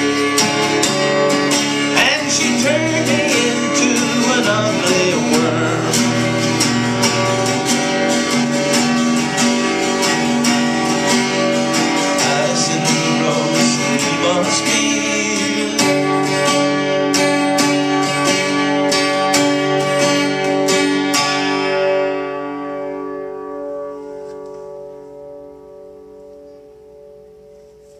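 Acoustic guitar strummed in a steady run of strokes that thin out to fewer, separate strums after about two-thirds of the way through. A final chord then rings out and dies away over the last few seconds.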